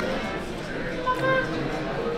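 Background music mixed with indistinct chatter of other people in a dining area.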